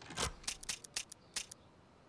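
A quick, irregular run of about a dozen sharp mechanical clicks over a second and a half, then stopping.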